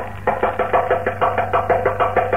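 Thavil drum playing a fast, even run of ringing strokes, several a second, over a low steady hum, in an old live recording that is dull above the middle range. The wind melody is not sounding at this moment: a percussion passage in a nadaswaram concert.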